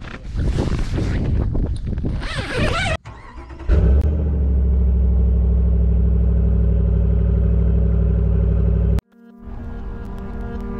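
A rustle of fabric as a tent flap is pulled open. Then, after a short lull, a pickup truck's engine runs loud and steady at raised revs while its rear wheel spins in deep snow, stuck. The engine cuts off abruptly, and guitar music starts near the end.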